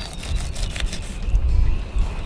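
Low, uneven wind rumble on the microphone, with faint scratchy sounds of a fillet knife cutting along the backbone of a white bass.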